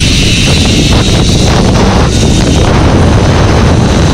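Loud, steady rush of wind buffeting a helmet-mounted camera's microphone as the rider slides fast down a zipline cable.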